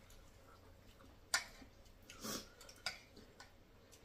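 Spoons ticking against china plates at a meal: a few sharp, separate clinks, about a second apart, with a short softer scrape between them.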